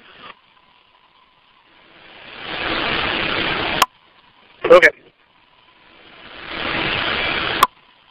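Fire-service two-way radio keyed open with only noise on the channel: a hiss that builds up, holds, then cuts off abruptly with a squelch click. This happens twice, with a brief spoken "okay" between.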